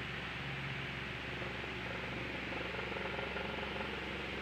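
Steady hiss with a faint low hum and no speech: background noise of a recording.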